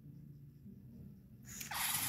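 LEGO EV3 large motors driving a plastic tread conveyor: a faint low motor hum, then about a second and a half in a loud rising mechanical rush as the treads are spun fast and the minifigure is flung off the track.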